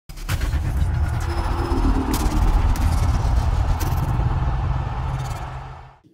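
An intro sound effect: a deep, steady rumble with several swooshing hits over it, fading out near the end.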